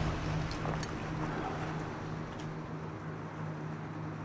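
Steady low hum of a boat engine on the water, easing down slightly over the first couple of seconds, with a few faint ticks.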